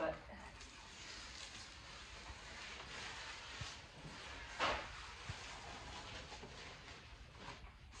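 Old wallpaper being peeled off a wall in long strips: a faint, steady papery rustle, with one sharper knock a little past halfway.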